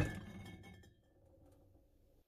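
Faint clinking and ringing of cans and jars in a fridge door's shelves just after the door has shut, dying away within the first second. Then near silence inside the closed fridge.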